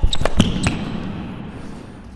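Tennis ball being struck and bouncing on an indoor hard court: a few sharp hits within the first second, then the level fades.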